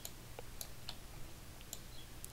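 A few faint, scattered clicks from a computer mouse and keyboard over a low background hiss.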